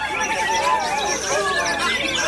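White-rumped shamas (murai batu) singing in quick, varied warbling phrases, mixed with a crowd's chatter and calling voices.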